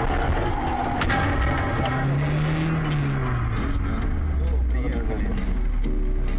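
Car dashcam audio from inside the cabin: steady engine and road rumble, with a sharp crash of impact about a second in as a truck hits a car ahead.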